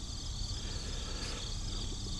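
Insects trilling steadily, a continuous high-pitched buzz over a faint low rumble.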